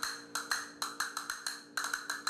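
Castanets clicking in a quick, uneven rhythm, about seven or eight clicks a second, over a faint steady hum.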